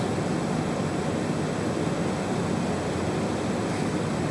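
Steady, even hiss of room tone in a seminar room, with no distinct events.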